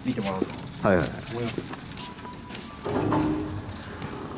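Short voiced exclamations and chatter from several people, three brief bursts, with light jingling and clicking between them.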